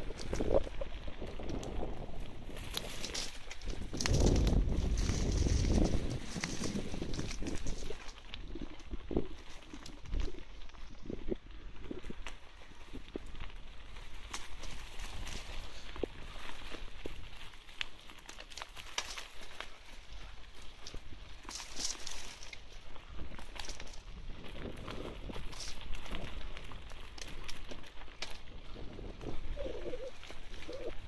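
Bicycle rolling along a dirt forest trail, its tyres crackling through dry leaf litter and the frame rattling with many small clicks over the bumps. A louder low rumble comes from about four to six seconds in.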